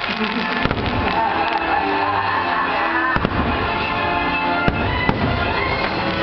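Fireworks bursting over show music: deep rumbling thuds with several sharp bangs, the loudest about three and five seconds in.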